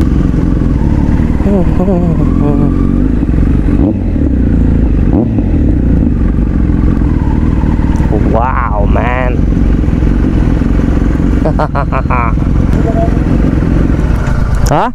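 Kawasaki Z900 inline-four engine running steadily under way, with wind noise on the camera microphone.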